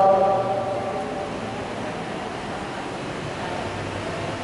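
A man's voice through a microphone and PA holds a long, steady note that fades out about a second in. After that there is only a steady rushing noise from the electric stand fans and the room.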